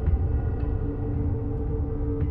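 Dark, ambient horror background music: sustained low tones come in about half a second in over a steady low rumble.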